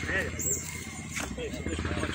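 A small engine running steadily, with a fast, even pulse, under a few faint distant voices.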